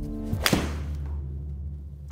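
A forged muscle-back iron striking a golf ball off a hitting mat: a single sharp impact about half a second in. The golfer calls it a slightly thin strike.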